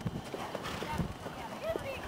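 Hoofbeats of a horse cantering on soft dirt arena footing.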